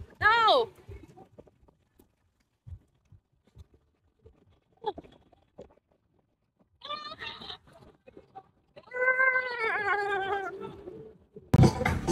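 A short laugh, then a mostly quiet stretch with faint scattered noises, followed by a long wavering vocal cry lasting about two seconds. Loud music starts near the end.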